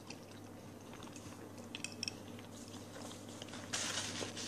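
Faint closed-mouth chewing of a mouthful of pizza, with a few soft clicks about two seconds in. Near the end comes a brief louder rustle of a paper napkin being handled.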